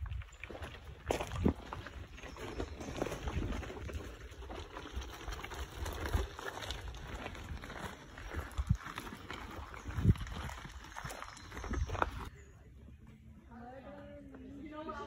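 Footsteps and rustling foliage with thumps of handling noise on a handheld phone's microphone while walking through woodland; the noise drops away suddenly about twelve seconds in.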